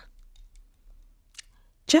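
A quiet pause with a few faint ticks and one small, sharper click about one and a half seconds in. A woman's voice starts again near the end.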